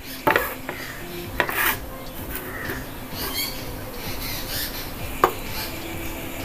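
A few sharp clinks and knocks of a plate and a stainless-steel mixer-grinder jar being handled as ingredients go into the jar. One comes just after the start, two come around a second and a half in, and one comes near the end.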